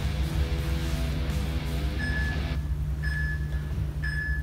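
Background music with guitar over a steady low bass, the upper part dropping out about two-thirds of the way through. A workout interval timer beeps a countdown near the end: short high beeps once a second.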